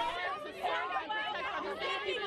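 A protest crowd: many voices talking and calling out over one another at once.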